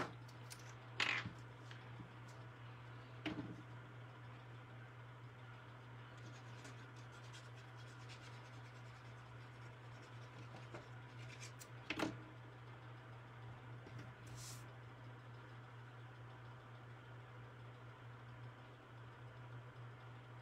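Faint scrape and rub of a liquid glue bottle's tip dragged across cardstock, with paper being handled and a few light knocks as items are set down on the table, over a steady low hum.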